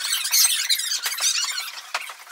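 High-pitched, squeaky chattering with quick rises and falls in pitch, like speech sped up into a chipmunk voice.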